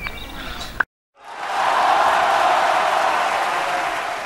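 Outdoor pitch ambience with a couple of sharp knocks, cut off suddenly under a second in. After a brief silence, a loud, steady rush of noise swells in over about half a second and holds, like applause or a crowd's roar laid over the end card.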